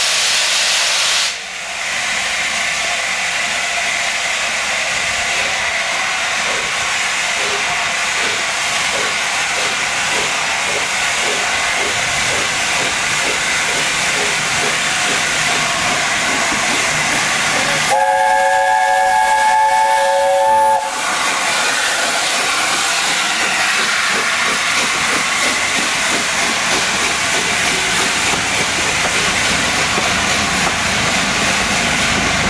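Steam locomotive 60007 Sir Nigel Gresley, an LNER A4 Pacific, hissing loudly and steadily as it passes, with steam escaping from around its cylinders. A little past halfway it sounds its chime whistle once, a chord of several notes held for about three seconds.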